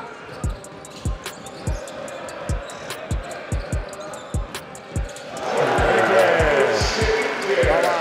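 A basketball being dribbled on a hardwood court: repeated low bounces about twice a second, with short high clicks over them. Voices swell louder in the second half.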